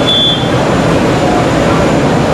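Steady mechanical running noise of a narrow-web flexo label press, with a thin high steady tone that stops about half a second in.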